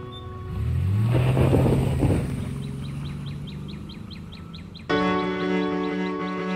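A car drives past, its engine note rising slightly as it goes by, over soft background music. Then a bird chirps rapidly, about five chirps a second, before a louder string music passage comes in suddenly near the end.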